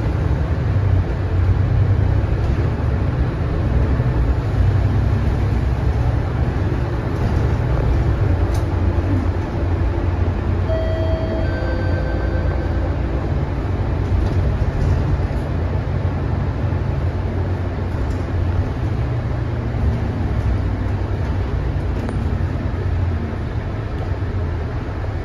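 Cabin noise of a Mercedes-Benz O530 Citaro single-deck bus on the move: a steady low drone of its diesel engine and tyres on the road, with a few faint short tones around the middle and light rattles.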